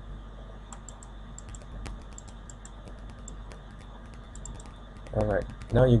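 Irregular light clicks from a computer mouse and keyboard, over a steady low hum. A man's voice starts near the end.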